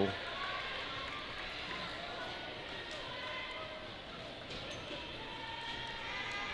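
Low murmur of crowd voices echoing in a gymnasium, with a basketball bounced on the hardwood floor by the shooter before a free throw.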